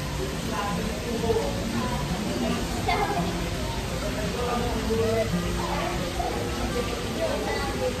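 Background music with held notes over indistinct chatter and a steady hiss of room noise.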